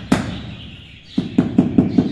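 Rubber mallet tapping a marble tile down into its mortar bed to seat and level it: one knock just after the start, then a quick run of dull taps, about five a second, from just past the middle.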